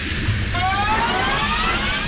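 Produced intro sound effect: a steady hiss of steam, with a whine that rises steadily in pitch from about half a second in.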